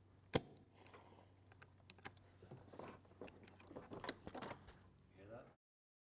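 A sharp click, then a run of small irregular plastic and metal clicks and rattles as the Airlift 2 vacuum bleeder's adapter is worked off the coolant reservoir. The sound cuts off abruptly about five and a half seconds in.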